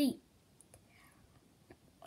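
The tail of a spoken word, then quiet room tone with a few faint clicks of fingers handling a small vinyl Funko Pop figure.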